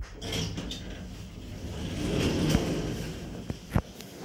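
Automatic sliding doors of a Shcherbinka passenger elevator opening with a rumbling slide, loudest about two and a half seconds in, followed by two sharp clicks near the end.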